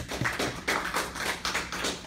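A small audience clapping briefly, many quick, separate claps overlapping, dying away near the end.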